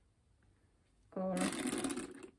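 Metal chain strap of a Michael Kors Greenwich handbag rattling and clinking as it is pulled through and adjusted, starting about a second and a half in.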